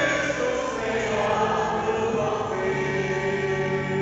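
A choir singing a Portuguese-language Catholic hymn in long held notes.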